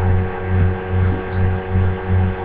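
A steady low electrical hum that swells and fades about twice a second.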